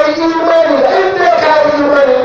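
A man's loud voice into a handheld microphone, preaching in a drawn-out, chanted delivery with long held pitches and few breaks.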